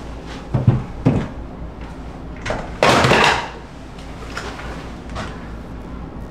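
Handling noises in an open gun safe: a few knocks and clunks, then a louder half-second rush of sliding or scraping noise about halfway through, then a couple of light clicks as things are moved in and out of the safe.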